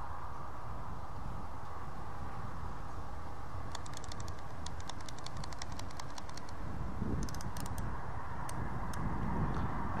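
Two quick runs of light clicks, about four seconds in and again about seven seconds in, over a steady low outdoor rumble.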